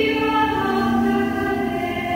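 A women's choir singing an Italian sacred hymn in sustained chords, moving to a new chord about half a second in.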